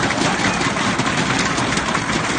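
Crowd applauding and banging red noisemaker sticks together: a loud, dense clatter of claps without a break.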